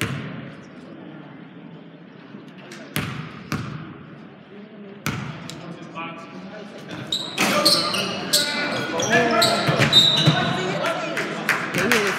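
A basketball bouncing a few times on a hardwood gym floor as a free throw is set up. From about seven seconds in there are shouting voices and short high squeaks as play resumes in the echoing gym.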